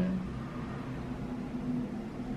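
A spoken word trails off at the start, then a pause filled with steady low room noise and a faint hum.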